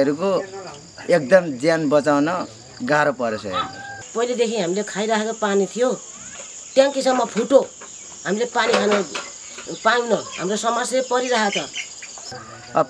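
Speech, a man and then a woman after a cut, over a steady high-pitched chirr of insects.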